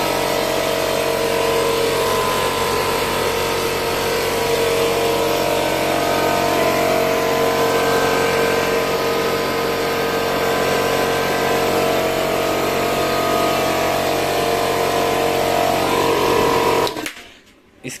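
Ingco 2 HP, 24-litre portable piston air compressor running steadily with a level motor-and-pump hum. It cuts off about a second before the end. Its running sound is "very little sound".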